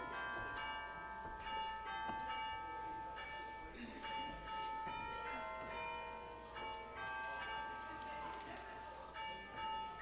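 Instrumental music of bell-like notes, many ringing and overlapping over one long held tone.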